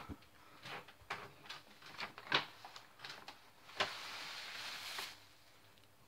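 Paper gift bag being handled and a disposable diaper pulled out of it: scattered light rustles and taps, then a steadier rustle lasting about a second shortly before the end.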